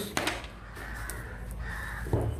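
A bird calling, over a low steady hum.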